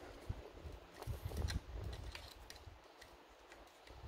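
Faint handling noise of fingers on a plastic model car body: scattered soft clicks and taps, with a low rumble about a second in that dies away near the end.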